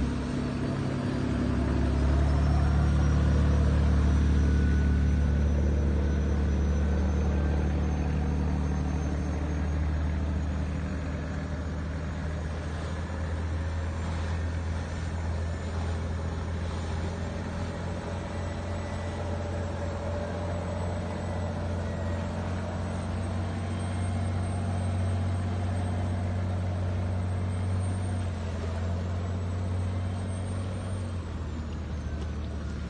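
Cummins 210 hp marine diesel in a Shamrock 26 boat running at speed: a steady low drone, loudest a few seconds in as the boat passes close, then a little quieter as it moves away.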